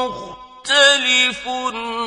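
A male reciter's voice chanting the Quran in a melodic, drawn-out tajweed style. A long held note ends at the start, a brief breath follows, and then a new phrase begins just after half a second in, stepping and gliding in pitch.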